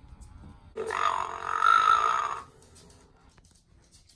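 Playskool Kota the Triceratops animatronic toy making one dinosaur call from its built-in speaker, starting about a second in and lasting about a second and a half.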